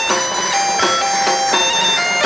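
Traditional folk music: a bagpipe (gaita) plays a lively melody of held notes over its steady drone, while a drum keeps a regular beat.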